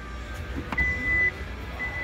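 Two steady high beeps from a 2019 Kia Stinger's power liftgate, each about half a second long, the second near the end, after a short click of the button being pressed; the beeps signal the liftgate being operated.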